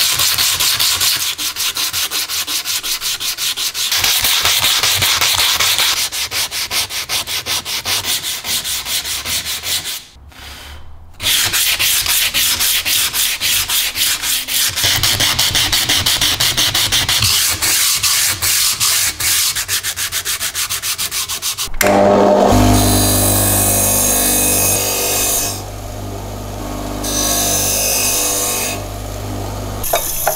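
Hand sanding of a rusty metal slicer part with sandpaper on a block, in quick back-and-forth strokes, with a brief pause about ten seconds in. From about two-thirds of the way in, it changes to scrubbing the part under a running tap in a sink.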